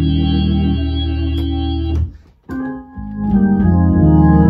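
Viscount Legend '70s drawbar organ, played through a Leslie 3300 rotary speaker, holding sustained hymn chords over a low bass line. About two seconds in, the sound stops briefly between phrases, then new chords come back in.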